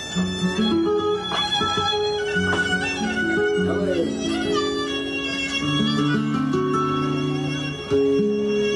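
Live flamenco fusion music with Japanese traditional instruments: a held melody moving note by note in steps over plucked strings, with a few sharp percussive strikes in the first couple of seconds.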